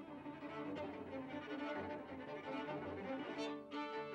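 String quartet playing: two violins, a viola and a cello bowing sustained, overlapping notes. The phrase breaks off briefly near the end, and new bowed notes begin.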